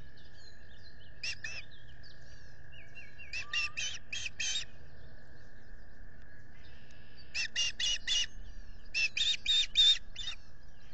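Osprey calling in bouts of rapid, high whistled chirps: a pair about a second in, then runs of five or six quick notes near four seconds, near eight seconds and again at the end.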